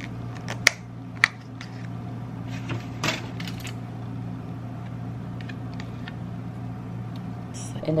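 A few sharp clicks and taps from a small plastic sour cream side cup being handled over the burrito. The two loudest come within the first second and a half. A steady low hum lies under them.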